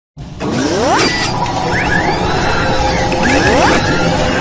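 Sound-designed intro effects for an animated mechanical logo: a loud, steady low rumble that starts abruptly, with two rising sweeps, one about a second in and another near the end.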